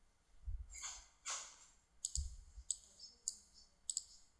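Computer mouse clicking several times, faint and sharp, with a couple of soft low thumps.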